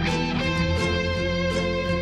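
Live progressive rock band playing an instrumental passage: electric guitar and keyboards holding notes over a steady bass, with a beat of hits about two and a half times a second.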